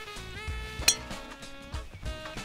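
One sharp click of a golf club striking a teed ball on a moderate-pace swing, a little under a second in, over background music with sustained notes.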